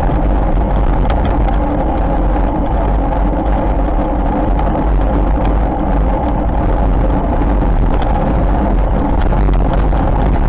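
Steady wind rumble on the microphone of a camera moving along a road, with the constant hum of tyres rolling on tarmac underneath.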